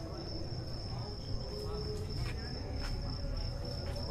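A cricket chirring in one steady high-pitched tone, with faint voices and a low rumble underneath.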